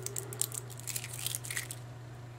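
A clump of small spherical magnet balls being pulled apart by hand into two clumps, the balls giving a rapid run of fine clicks and crackles that stops shortly before the end. A steady low hum runs underneath.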